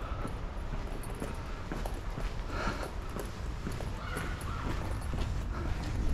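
Brisk footsteps on hard ground, with a steady low rumble of handling and wind noise on the camera microphone.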